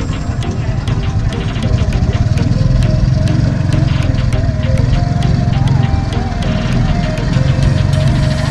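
Vehicle engine running as the vehicle moves off, with background music with a steady beat over it.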